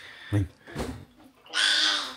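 A person slurping hot broth off a metal spoon to taste it: one loud slurp starting about one and a half seconds in, after a short spoken word.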